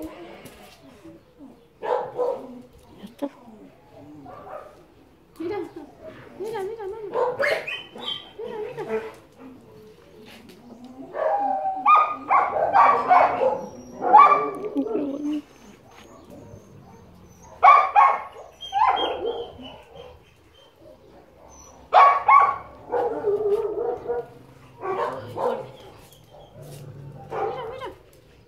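Dogs barking off and on, mixed with a person's voice talking.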